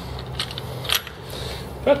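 Two light metallic clicks about half a second apart, from a spark plug socket and extension being worked off a freshly tightened spark plug, over a faint steady hum.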